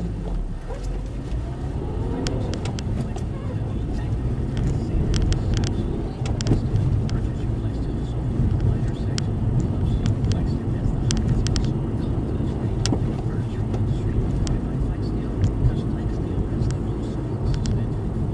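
Car driving, heard from inside the cabin: steady engine and tyre rumble, with the engine note rising as the car speeds up in the first few seconds. Scattered short clicks and rattles sound throughout.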